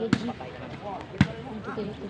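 A ball struck hard twice during a rally, two sharp smacks about a second apart, over crowd voices.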